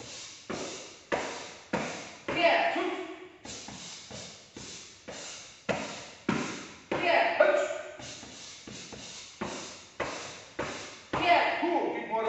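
Punches and knees landing on a fighter's body in a karate body-conditioning drill, a steady run of thuds at about two a second, each echoing in a large hall. A voice calls out briefly three times between the strikes.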